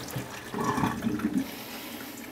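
Parboiled chicken pieces and the last of their hot cooking water tipped from a pot into a plastic colander in a stainless-steel sink. There is a wet, splashing slide for about a second, then water drains away more quietly.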